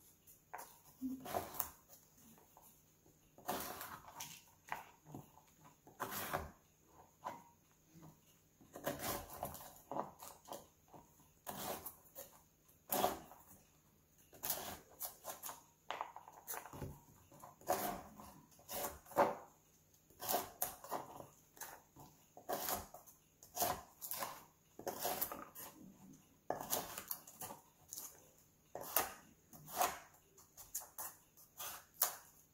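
Stainless steel hawkbill knife scraping and prying coconut meat away from the inside of the shell: short scrapes and knocks at irregular intervals, about one a second.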